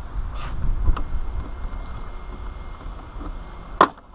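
Plastic trim molding being pried off beside a car's quarter glass. A faint click comes about a second in, and near the end a loud, sharp snap as a retaining clip pops loose. Low wind rumble on the microphone runs throughout.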